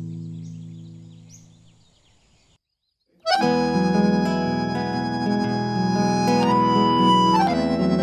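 A held guitar chord dies away to silence over the first two and a half seconds. About three seconds in, a piano accordion comes in suddenly, playing sustained chords with a melody over them.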